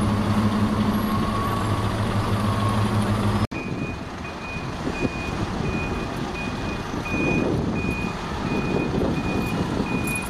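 A coach's diesel engine running with a steady low drone; then, after a sudden cut, a reversing alarm beeping about twice a second over engine and traffic noise as the coach backs out of its bay.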